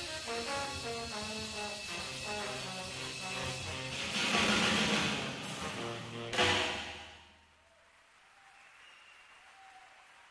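Jazz quartet of tenor saxophone, trombone, bass and drums playing the last bars of a tune. It builds to a loud swell and ends on a sharp final accent about six and a half seconds in, then dies away to a faint hiss.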